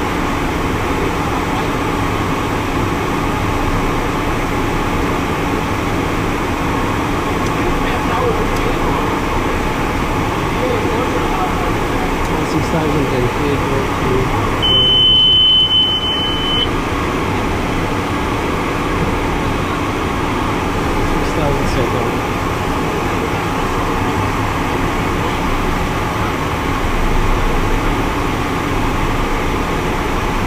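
Steady airflow and engine noise inside a small jet's cockpit in flight, with one high, steady electronic alert beep lasting about two seconds midway.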